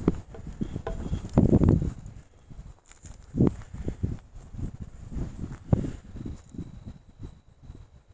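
Footsteps through dry grass and fallen leaves, uneven, with a few louder thumps about one and a half, three and a half and nearly six seconds in.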